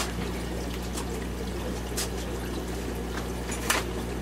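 Steady trickling and splashing of water running through a room of aquariums, over a low steady hum. A couple of short knocks come about two seconds in and near the end.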